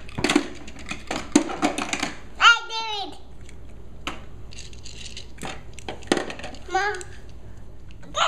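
Hard plastic clicks and knocks from a toddler handling a toy truck and fitting its ladder in, in a quick run over the first two seconds and a few more around five to six seconds. A child's short high-pitched vocal sound comes about two and a half seconds in.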